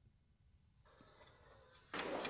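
Near silence. About a second in, the faint room noise of a stand-up recording fades in, and it rises sharply just at the end.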